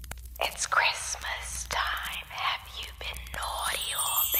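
A person whispering words in a breathy voice, with a faint steady low hum underneath.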